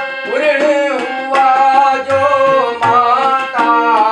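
Harmonium and tabla accompanying a man singing a Kumauni Ramleela song, with sustained harmonium chords under a bending vocal line and repeated tabla strokes.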